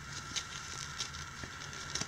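Faint handling noise of hands unwrapping a small part from its packaging: a light crackling rustle with scattered small clicks.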